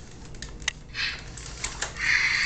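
Scattered sharp plastic clicks and clatter from a remote-controlled robot dinosaur toy being handled, with a short hiss about a second in.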